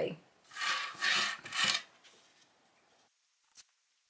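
Fabric scissors cutting through layers of cotton fabric: three short cuts in quick succession about a second in, then a single small click near the end.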